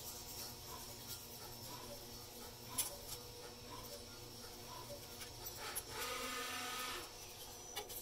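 Faint handling of a Y-shaped hex wrench tightening the M5 bolts of the crossbar's T-clamp. There are a few light clicks, then about a second of rasping as the bolt is turned, over a low steady room hum.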